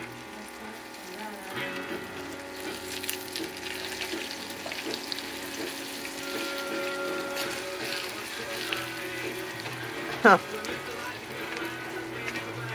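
Breaded eggplant slices frying in bubbling olive oil, a steady crackling sizzle, with soft music running underneath.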